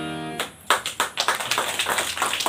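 A harmonium's held closing chord dies away in the first half second. From then on there are scattered, irregular hand claps of a small group.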